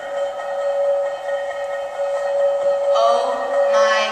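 A steady, unchanging held tone with several overtones, sustained through the whole stretch.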